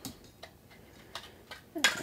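A few faint, short plastic clicks and taps as a circuit board is worked loose from its plastic case.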